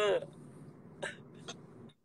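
A person's voice finishes a word with a rising pitch, then a pause with a low steady background and two short faint sounds, one about a second in and another half a second later.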